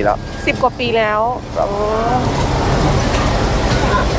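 A voice speaks briefly, then about halfway in a steady low rumble of motor traffic sets in and holds.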